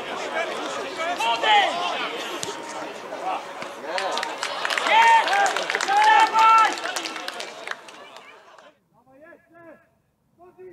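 Footballers shouting and calling to each other on the pitch during open play, several voices overlapping, with a few sharp knocks among them; the loudest calls come about five and six seconds in, and the sound fades out about eight seconds in.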